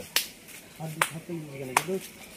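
Three sharp finger snaps by hand, about a second apart, with a low voice underneath.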